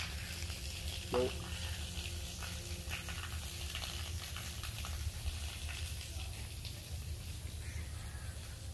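Light rain pattering on tree leaves, a steady crackling hiss, over a constant low rumble.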